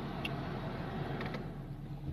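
Steady low background hum and hiss of a car interior, with no distinct events.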